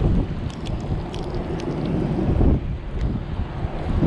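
Strong wind blowing on the microphone with a steady low rumble, over choppy water sloshing and splashing right at the lens, with a few small splashes in the first couple of seconds.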